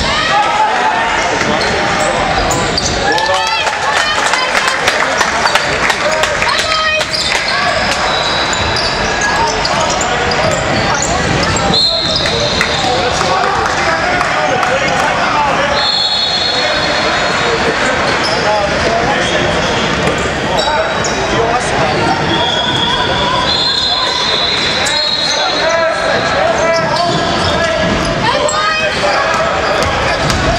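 Basketball game on a hardwood court: the ball bouncing and players moving, with shouted calls from players and onlookers, echoing in a large hall. Several brief high-pitched squeals sound during play.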